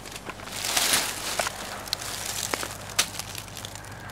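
Footsteps and brushing through dry leaf litter and forest undergrowth: a burst of rustling about a second in, then a few scattered sharp clicks.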